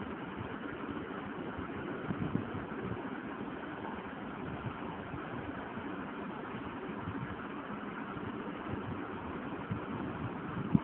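Steady background noise, a low rumble with hiss and no distinct events.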